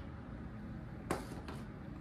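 Quiet room tone with a single short, light knock about halfway through, from handling things on a tabletop.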